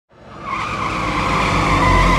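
A sustained high screech under the producer's logo. It fades in from silence over the first half second and then holds steady, with a low rumble beneath.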